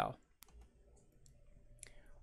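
A single sharp computer mouse click, under half a second in, ticking a checkbox, followed by faint quiet room tone.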